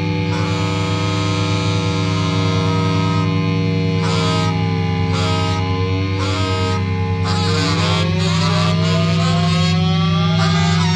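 A live experimental rock band (electric guitar, bass, tenor sax, theremin) holds a dense drone: a thick, steady low hum under several held tones. From about eight seconds in, pitched lines glide slowly upward.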